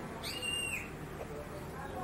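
A single short, faint high whistling call, about half a second long, that rises slightly, holds and falls away, over quiet room tone.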